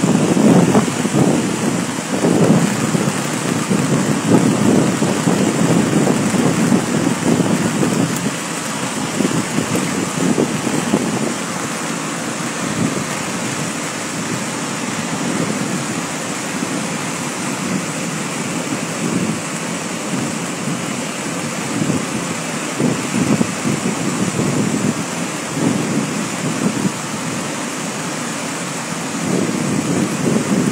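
Waterfall in full spate, a heavy muddy torrent plunging down a cliff into spray: a steady, loud rush of falling water, a little louder over the first eight seconds or so.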